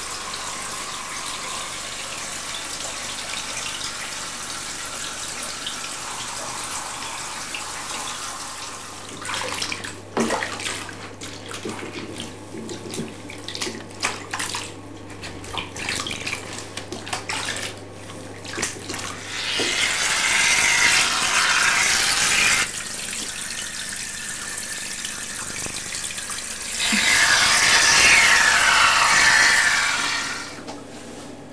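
Water in a bathtub: a steady rush of running water, then irregular splashing and sloshing from about nine seconds in. Two louder stretches of rushing water follow, the second near the end.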